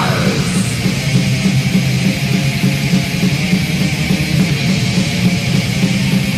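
Heavy metal from a 1986 demo recording by a German thrash band: distorted electric guitars and drums playing an instrumental passage without vocals, loud and steady.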